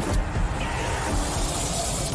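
DAZN broadcast intro sting: electronic music and sound-design effects, with a hissing swell that builds over the second half and cuts off sharply at the end.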